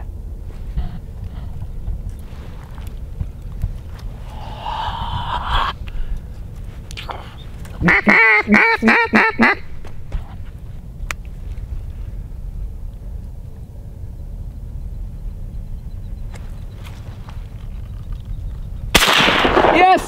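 A quick run of about eight loud duck quacks about eight seconds in, then a single shotgun blast near the end that drops a gadwall.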